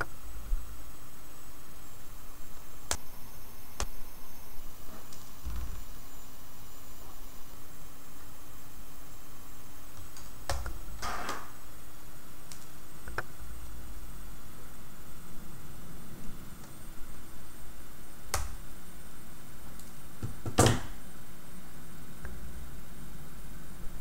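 Small sharp clicks and taps of hands working stripped wires into the screw terminals of a robot's motor-driver board, spaced out over a steady low background hiss. The loudest two clicks come near the end.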